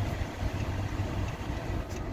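Chrysler 300's 3.6-litre six-cylinder engine idling, a steady low hum heard from inside the cabin.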